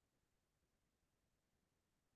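Near silence: faint steady background hiss with no distinct sound.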